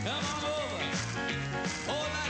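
Rock and roll band playing electric guitars, piano and drums, with a man singing held, sliding notes over it.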